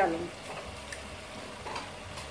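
A pot of onion, tomato and pea masala sizzling steadily as whole garam masala is spooned into it, with a couple of light clicks from the spoon.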